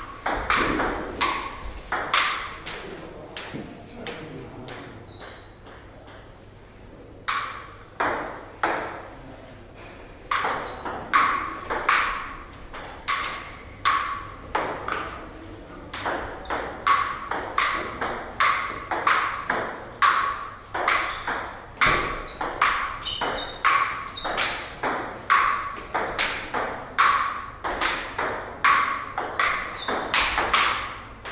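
Table tennis rallies: the ball clicking sharply off the table and the rubber-faced paddles in quick alternation, about two hits a second. Runs of hits are broken by short gaps between points, with a quieter stretch about 4 to 10 seconds in.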